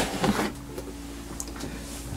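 The plastic lid of a large LEGO 2x4 storage brick being lifted off its base: a few sharp plastic knocks and scrapes in the first half-second, then a faint steady hum with one small tick.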